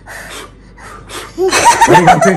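A small child blowing at birthday candles in short breathy puffs, then, about a second and a half in, adults laughing and exclaiming loudly.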